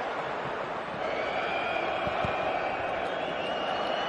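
Large stadium crowd of football supporters, a steady mass of voices. A few thin, high, held whistles sound over it from about a second in.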